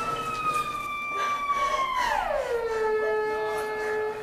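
A long, high-pitched wail that sinks slowly, slides steeply down about two seconds in, then holds a much lower tone.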